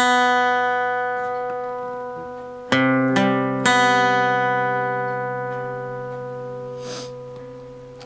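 Steel-string acoustic guitar with single notes picked one at a time on the A string, the D string and the open B string, fretting the first power-chord shape instead of strumming it. One note sounds first, then two more follow close together about three seconds later, and all are left to ring and slowly fade.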